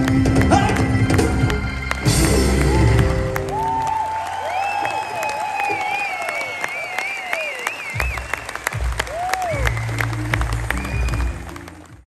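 A live band plays its closing bars and ends on a final hit about two seconds in; the theatre audience then claps and cheers, with shrill whistles gliding up and down over the applause. The sound fades out at the end.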